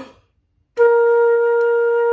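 Concert flute playing a single steady, sustained B-flat, starting a little under a second in and held as a long note: the opening note of a B-flat, C, B-flat scale exercise.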